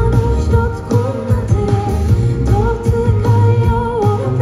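Live pop song with a woman singing long held notes over heavy bass and a steady beat, recorded from the audience on a phone.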